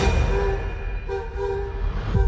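Cinematic trailer hit under the title card: a deep low rumble with a sustained, horn-like chord that starts suddenly and swells again at the end.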